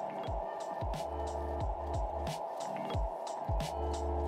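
Electronic background music with a steady drum beat of kicks and hi-hats over a bass line.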